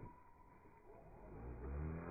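FPV racing quadcopter's motors, slowed down with the slow-motion footage to a low hum. It swells in from about halfway through, rising in pitch as the motors speed up.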